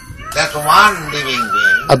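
A man's voice speaking, with a drawn-out rising and falling note partway through; loud speech picks up again right at the end.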